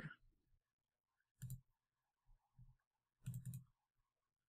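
Faint computer mouse clicks: a single click about a second and a half in, then a quick double click a little after three seconds, as a file is picked for upload.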